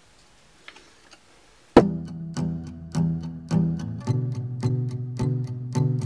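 Faint room sound for almost two seconds, then background music starts suddenly: a song with a steady beat.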